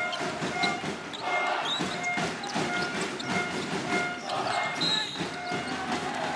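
Live basketball arena sound: steady crowd noise from the stands, with sneakers squeaking in short bursts and the ball dribbled on the hardwood court.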